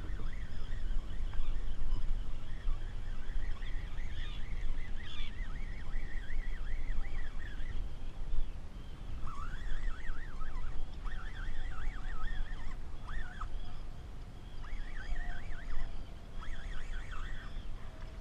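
Seabirds calling over the water in repeated runs of short rising-and-falling notes, coming in several bouts, over a steady low rumble of wind and water.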